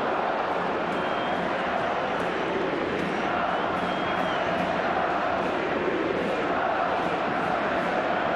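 Football stadium crowd: a steady, dense mass of spectators' voices, with no single sound standing out.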